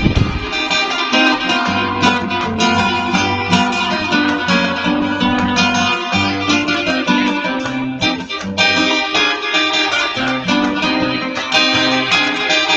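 Steel-string acoustic guitar played solo, plucked notes of a melody over a moving bass line.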